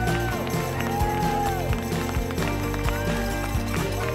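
Background music with a steady beat and sustained chords.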